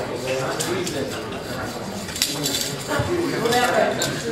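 Indistinct chatter of several people talking at once in a large room, with a few light clinks.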